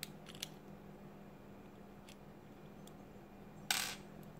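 A small screwdriver prying at the plastic housing of a wall light switch: a few light clicks and ticks, then a short, louder clatter near the end as the housing parts come apart.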